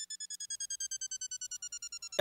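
A high electronic tone gliding slowly down in pitch, pulsing rapidly at about ten beats a second, like an intro sound effect.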